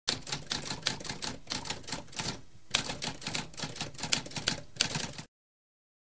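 Typewriter keys striking in a quick, uneven run of clacks, with a brief pause about halfway and one sharper strike after it; the typing stops suddenly a little past five seconds.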